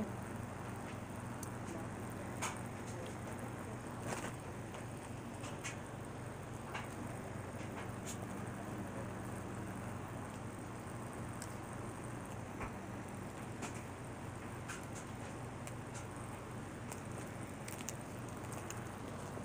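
Steady low hum with a few faint, scattered clicks and taps.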